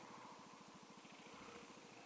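Faint scooter engine idling, a steady, even low putter.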